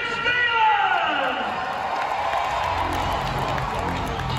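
Amplified announcer's voice over an arena PA, one long drawn-out call falling in pitch during the first two seconds, with echo. Crowd noise and music fill the rest.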